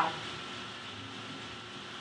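Quiet, steady room tone: an even hiss with a faint low hum, and no distinct event.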